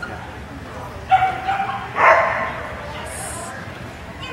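A dog barking twice: a short, high yip about a second in, then a louder bark about two seconds in.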